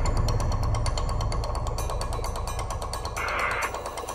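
A TV programme's intro sound design: a quick run of mechanical-sounding clicks over a steady low drone, with a short noise swell about three seconds in.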